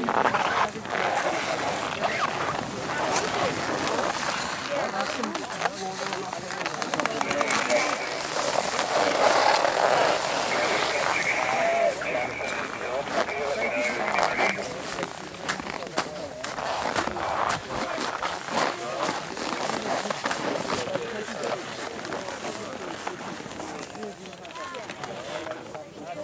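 Indistinct voices of several people talking and calling out at once, words unclear, with scattered clicks and knocks among them.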